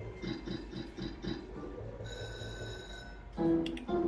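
Novoline video slot machine's electronic sound effects during a free spin. There is a quick run of repeated beeping tones, then a steady high ringing tone about two seconds in, and a louder chime near the end as a winning line pays out.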